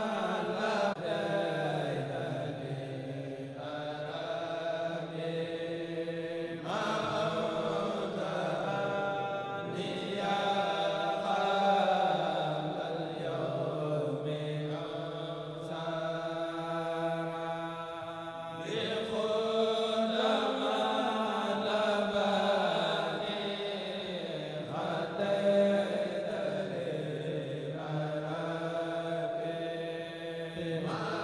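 A Mouride kourel, a group of men chanting a xassida in unison into microphones, without instruments. Long held vocal lines shift to a new phrase every few seconds.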